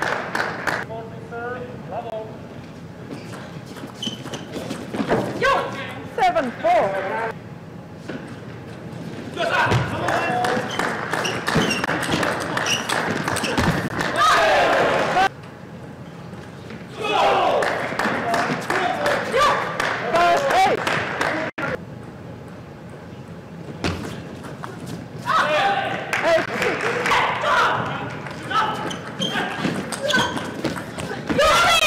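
Table tennis ball clicking back and forth off the table and paddles in fast rallies, three long runs of clicks with short pauses between points. The hits ring a little in a large hall.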